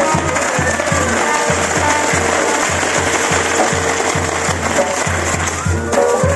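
Fireworks on a burning castillo tower, crackling and fizzing densely and without a break, fading near the end. Under them a brass band plays, with a bass-drum beat about three times a second.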